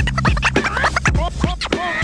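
Turntable scratching over a hip-hop beat: a vinyl record is pushed back and forth by hand and cut in and out with the mixer's fader, giving many quick rising and falling squeals over a steady bass line.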